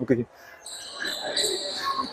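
Badminton play in a sports hall: sneakers squeaking on the wooden court floor over the hall's background noise, after a brief word at the start.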